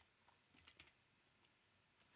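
A few faint computer keyboard keystrokes, mostly clustered a little after the first half second.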